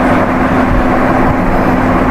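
Steady background noise, a dense rushing hiss with a constant low hum underneath, unbroken and with no clear source events.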